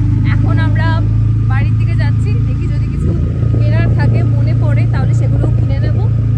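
Steady low drone of a motorbike or scooter engine and road rumble while riding, with people talking loudly over it.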